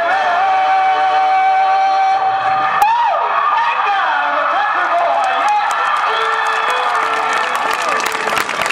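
A song's final long held sung note, then more singing as it winds down. Near the end the crowd starts clapping and cheering.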